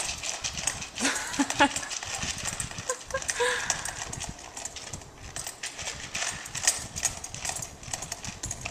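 A dog eating dry cat food from a plastic container: rapid, irregular crunching of kibble and clicking of its muzzle against the plastic.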